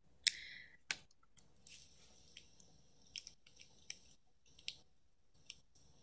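A sharp click, a second click a moment later, then a scattering of faint, irregular high ticks and crackles.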